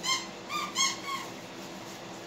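A dog whining: four short, high-pitched whines, each rising and falling, packed into the first second or so.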